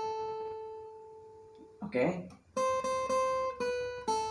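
Single notes picked with a plectrum on a Cort acoustic guitar: one note rings and slowly fades over the first two seconds. After a short pause, more notes of the melody line are picked, stepping down to a lower note near the end.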